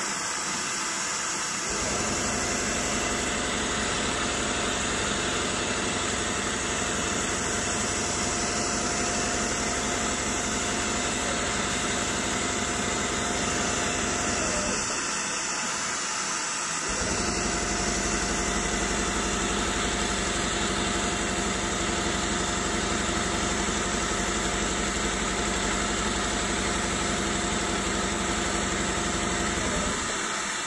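Richpeace computerized embroidery machine's punching head running, rapidly punching a square grid of holes, over a steady machine hum. The fast low pounding drops out twice: briefly at the start and for about two seconds midway.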